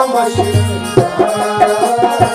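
Harmonium playing a melody over a steady beat of hand percussion: an instrumental passage between sung lines of a folk song.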